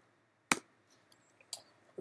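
Two clicks of a computer keyboard, about a second apart, the first the louder, as a value is typed into a parameter field and entered.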